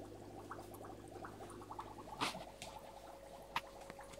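Faint running noise of small aquarium equipment: a steady low hum with a fine, rapid rattle. A steady higher tone joins about two seconds in, and there are two light clicks, about two and three and a half seconds in.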